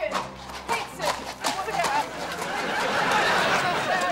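Horses' hooves knocking irregularly on gravel as they walk. About halfway through, audience laughter swells over them.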